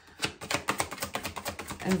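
A deck of tarot cards being shuffled by hand, overhand: a rapid run of light card clicks, about a dozen a second, starting a moment in.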